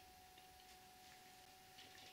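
Near silence: faint hiss with a thin steady hum.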